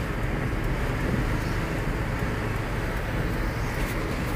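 Steady road and engine noise heard from inside the cabin of a moving car.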